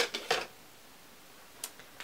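Small eyeshadow package being opened by hand: a quick cluster of crinkles and clicks at the start, then a single sharp click about a second and a half in.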